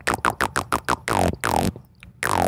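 A beatboxer's lip roll: a quick run of short bubbly lip pops, about ten in the first second, then two longer lip roll tones that fall in pitch.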